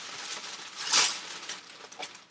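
A plastic cassette tape being handled by hand: rustling and light clicks, with a louder rustle about a second in.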